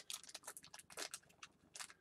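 Faint handling noise: an irregular run of small clicks and light crackles, as from coins and packaging being handled on a table.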